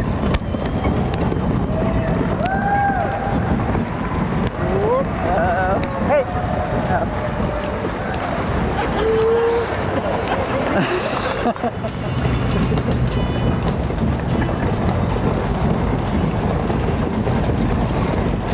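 Hooves of a team of Percheron draft horses clip-clopping as they pull a wagon, over a steady hubbub of indistinct voices.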